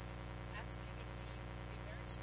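A woman's voice speaking faintly, half buried under a steady electrical hum.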